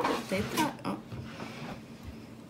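Low-level speech in a room: a short spoken 'A?' within the first second, then a quieter stretch of faint room sound.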